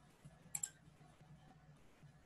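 Computer mouse button clicked, a quick press-and-release pair of clicks about half a second in, over a faint low hum.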